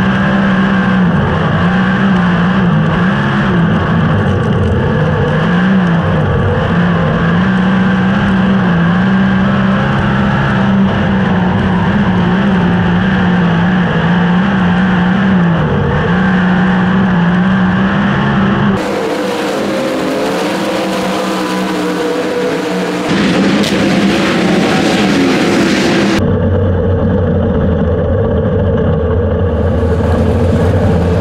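Onboard sound of a dirt-track sprint car's V8 engine racing, its note rising and falling steadily lap after lap. About two-thirds of the way through the engine note drops away under a rush of wind noise on the microphone. Near the end the engine settles to a steady, lower drone.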